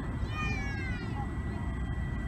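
A short high-pitched cry about half a second in, falling in pitch over roughly half a second, over a steady low background rumble.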